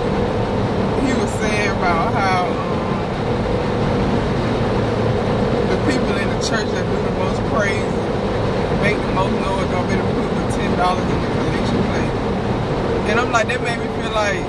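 Steady road and engine noise inside a moving car's cabin, with a person's voice coming and going over it.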